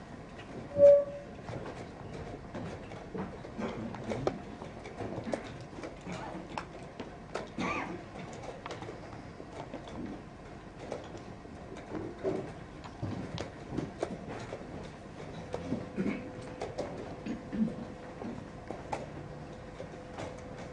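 Chess pieces set down on the board and chess clock buttons pressed in quick, irregular succession during blitz play: a string of sharp clicks and knocks. A short beep, the loudest sound, comes about a second in.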